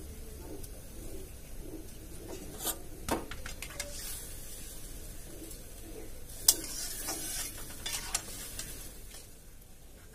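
Spoon stirring fried fish into curry in a metal pot on a gas stove, with a few sharp clinks of the spoon against the pot, the loudest about six and a half seconds in.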